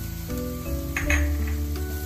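Chopped green chillies sizzling in melted butter in a frying pan, with a brief louder flare of sizzle about a second in, under background music.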